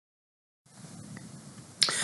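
Faint room tone as the recording begins, then near the end a sharp mouth click and a short intake of breath from a man about to speak.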